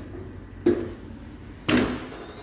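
Two metallic knocks: a sharp clink about two-thirds of a second in, then a louder clatter with a brief ring near the end, from a metal hand tool being handled or set down.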